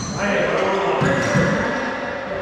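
Paddleball rally in an enclosed racquetball court: the ball smacking off paddles, walls and floor every half second or so, each hit echoing, with sneakers squeaking sharply on the hardwood floor.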